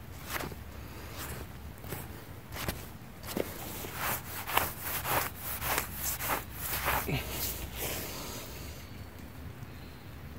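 Steel shovel blade rubbed back and forth on wet grass to wipe sticky clay off its back, a run of short swishing scrapes, about two a second.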